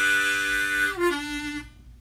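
Hohner Special 20 diatonic harmonica being played: a chord held for about a second, then a shorter, lower note that fades out. It is played to show off its warm tone.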